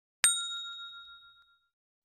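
A single bright, bell-like ding about a quarter second in, ringing with several high tones that fade away over about a second and a half.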